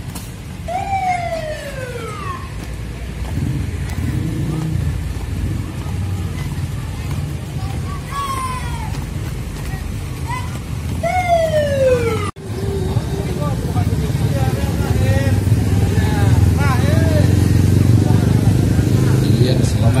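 Busy roadside noise of voices and motor vehicles, with three long falling-pitch wails about one, eight and eleven seconds in. A sudden break comes just past twelve seconds, after which the voices and engine rumble grow louder.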